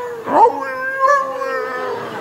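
A man's voice imitating a whining dog: one long, high, wavering whine, with a quick upward yelp about half a second in.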